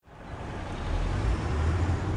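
Street traffic ambience: a steady low rumble of road vehicles fading in from silence over about the first second.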